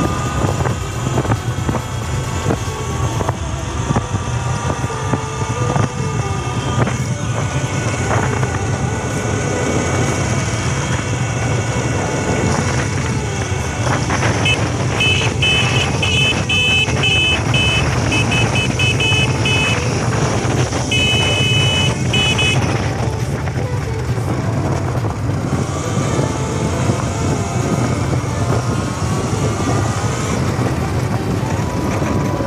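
Sur Ron LBX electric dirt bike on the move, its motor whine rising and falling in pitch with speed over a steady rumble of wind and tyre noise on the helmet-camera microphone. For several seconds in the middle, short high-pitched tones pulse over the ride.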